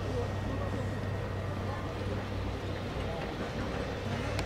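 Indistinct, distant voices of people talking, over a steady low hum.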